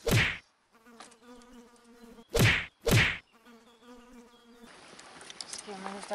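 A flying insect buzzing close to the microphone, a steady hum broken by three loud short thumps: one at the start and two in quick succession about two and a half seconds in. The buzz stops near the end, where a voice begins.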